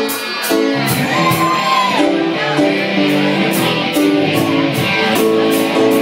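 Guitar music played in a jam: plucked guitar notes over a steady beat.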